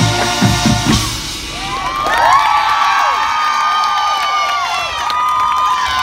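Marching band's closing held brass chord over drum hits, cut off about a second in, then a crowd cheering with many high-pitched yells and whoops.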